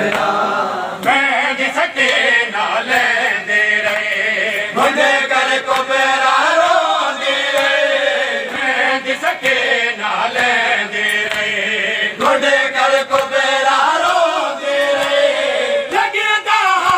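A group of men chanting a noha, a Shia Muharram lament, in unison, with sharp slaps of hands beating chests (matam) keeping time.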